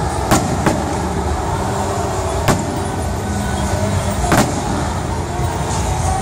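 Aerial fireworks shells bursting in sharp bangs: two close together in the first second, another about two and a half seconds in and a last one near four and a half seconds, over a steady low rumble of background noise.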